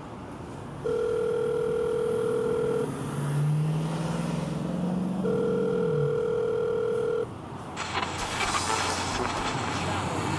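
Telephone ringing tone heard in a payphone handset: two steady rings of about two seconds each, a couple of seconds apart. Near the end it gives way to the rushing noise of a car driving in traffic.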